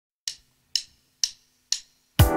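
Four sharp finger snaps, evenly spaced about two a second, opening a music soundtrack.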